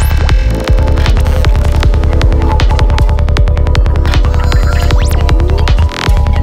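Dark psytrance at 156 bpm: kick drum and a rolling bassline pulsing steadily under layered synth lines and effects. The bass cuts out briefly about half a second in and again just before the end, and a rising synth sweep comes in near the start.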